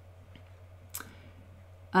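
A pause in speech: a faint steady low hum with one short, sharp click about a second in.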